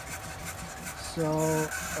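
Modified Anet A8 Plus 3D printer running a print: its stepper motors drive the print head and bed back and forth with a steady rasping buzz, over a faint steady hum.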